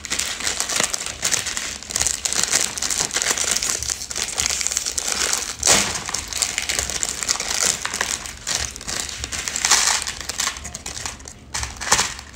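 Thin clear plastic wrapper of a dry instant-noodle block crinkling continuously as it is handled and opened, with sharper crackles about halfway through and again near ten seconds.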